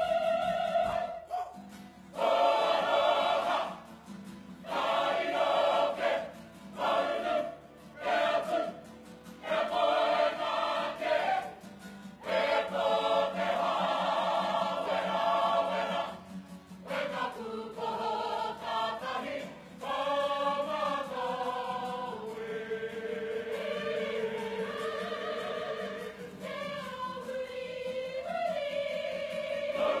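Mixed men's and women's voices of a kapa haka group singing a waiata tira, a choral item, together. It starts in short phrases with brief breaks between them, then moves into longer unbroken lines in the second half.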